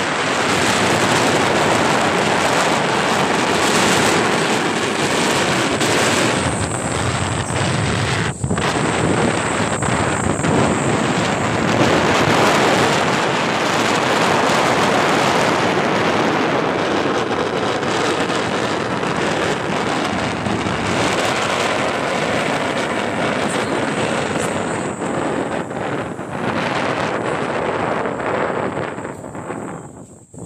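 Loud, steady wind noise buffeting the phone's microphone while riding along a road on an open vehicle. It cuts out for an instant about eight seconds in and falls away near the end as the ride slows.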